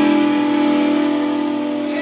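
Electric guitars holding one ringing chord that sustains and slowly fades.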